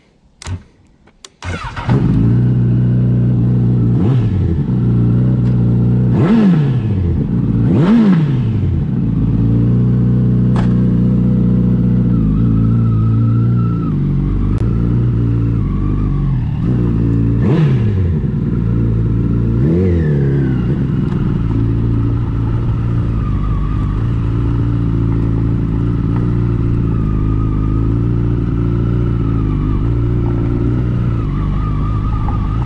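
2018 Honda CBR1000RR's inline-four running through an SC-Project SC1-R aftermarket exhaust. It starts about two seconds in and idles, with several sharp throttle blips that rise and fall quickly in pitch, then settles to a steady low-rev run as the bike pulls away.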